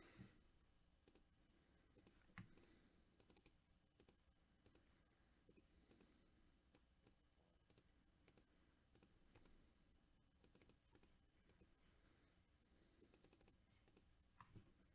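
Near silence with faint, scattered clicks of a computer mouse and keyboard, a few coming in quick runs near the end.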